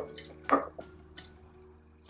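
A few light clicks and taps from a steel sound post setter working inside a violin body through the f-hole, nudging the sound post. The most distinct tap comes about half a second in, with smaller clicks after it.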